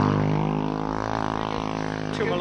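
A small motorbike engine running steadily as it passes close by.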